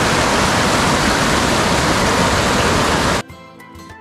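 Mountain river rushing loudly, running high with rain from upstream, cut off suddenly about three seconds in by music with plucked notes.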